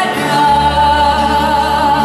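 A female voice holds one long sung note with vibrato over an orchestra of Azorean violas da terra and other guitars. A low bass note comes in about half a second in.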